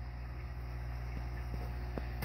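Steady low hum of running aquarium equipment.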